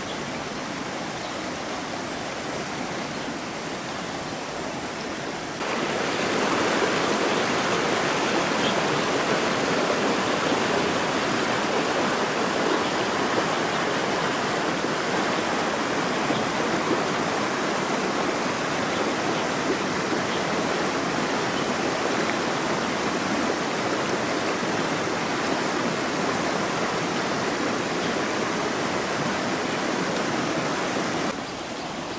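Shallow rocky river running over stones and small riffles: a steady rush of flowing water that jumps suddenly louder about five and a half seconds in and then holds steady.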